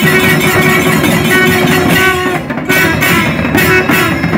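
Traditional temple procession band: long curved brass horns sounding a steady held note over fast, dense drumming. The horn note breaks off briefly about halfway through, then resumes.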